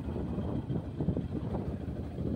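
Low, uneven wind rumble on the microphone, mixed with the road noise of a moving vehicle.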